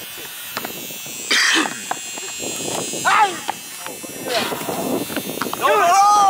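Young men's voices calling out in short shouts, with a few sharp knocks of a basketball bouncing on the hard court in the first couple of seconds.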